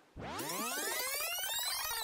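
Electronic sweep sound effect: many synthesized tones together rise in pitch and then fall again in one smooth arch, lasting about two and a half seconds.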